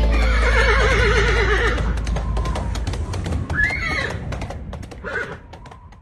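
A horse whinnying: one long quavering neigh in the first couple of seconds, then two shorter calls, with hooves clip-clopping throughout. The whole sound fades out towards the end.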